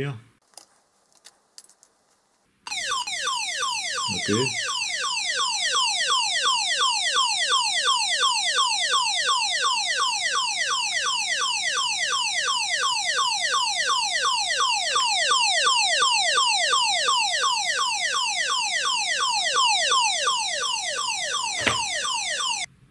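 Audio warning tone of a 1978 Elliott Brothers IRB-2 dual-frequency (121.5/243 MHz) survival beacon, played through a small loudspeaker wired to its audio generator output. After a few faint clicks it starts suddenly about three seconds in as a rapid, loud, repeated downward-sweeping electronic tone, several sweeps a second, and stops just before the end. This is the standard swept distress tone that modulates the beacon's emergency carrier.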